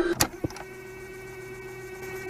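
The beat of a rap track drops out, leaving a quiet, steady held tone, with two short clicks in the first half second.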